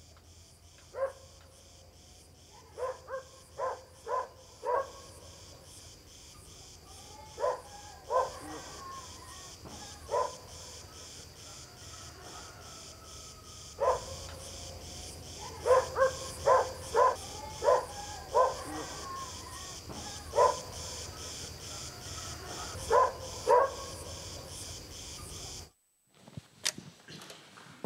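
A dog barking in scattered groups of short barks, over a steady, high, rapidly pulsing buzz. The sound cuts off suddenly just before the end.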